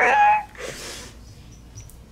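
A woman's vocal drum roll rising in pitch, which ends about half a second in. A short breathy rush of noise follows, then it goes quiet.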